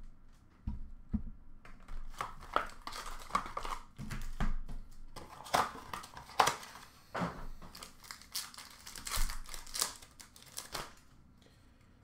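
Upper Deck Artifacts hockey box and its card pack wrappers being torn open and crinkled: irregular sharp rips and crackles that die away near the end.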